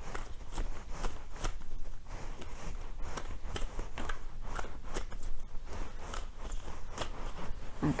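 A deck of cards being handled and shuffled by hand off camera: a run of light, irregular clicks and snaps, a few each second.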